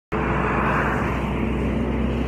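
Road traffic: a steady rush of tyre and engine noise with a low hum underneath, swelling slightly about halfway through as a vehicle goes by.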